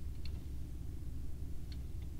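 Two faint ticks of a die-cast toy car being handled and set on a tabletop, about a quarter second in and near the end, over a low steady hum.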